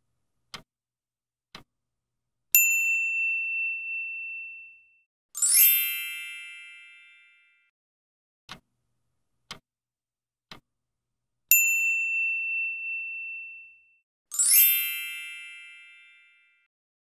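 Quiz-timer sound effects: faint clock ticks a second apart, then a loud bell ding that rings out, followed by a bright shimmering chime. The same run of ticks, ding and chime repeats in the second half.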